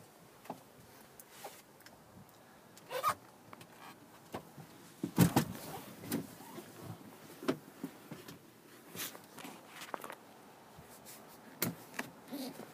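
Handling noise inside a minivan cabin: scattered light clicks, knocks and rustles as a handheld phone is moved around, with a louder thump about five seconds in.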